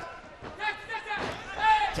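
Men's voices shouting short calls, with a sharp knock just before the end.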